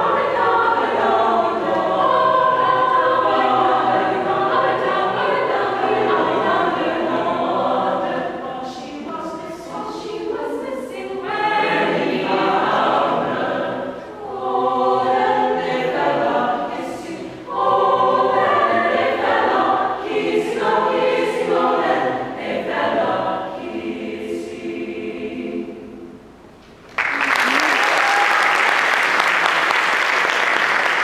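Mixed choir singing unaccompanied, the song ending and fading away about 26 seconds in. Audience applause breaks out a second later and carries on.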